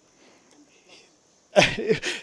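A man's eulogy pauses, with only faint sound for about a second and a half. Then his voice comes back with a sharp, breathy onset running into speech.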